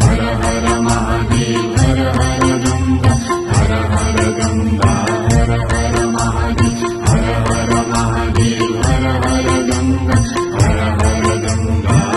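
Nepali devotional song to Shiva: voices singing over a steady, regular percussion beat, with repeated bright, high ticks.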